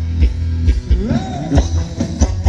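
Live Thai ram wong dance music played by a band through loudspeakers: a steady drum beat of about four strokes a second over a heavy bass line, with a singing voice sliding up in pitch about a second in.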